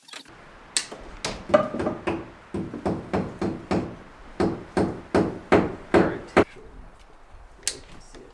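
Hand hammer striking into wooden wall framing in a steady run of blows, about three a second, which stops about six and a half seconds in; one more blow comes near the end.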